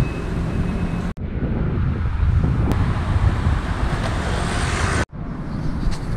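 Street traffic and wind rushing over the microphone while cycling through city streets, a steady rumble that breaks off abruptly twice, about one and five seconds in.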